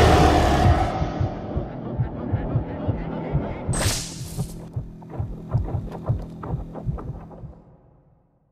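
Film-trailer sound design over the end title cards: a heavy impact hit that decays over the first second, a sharp whoosh about four seconds in, and a run of low throbbing pulses, like a heartbeat, about three a second, fading out just before the end.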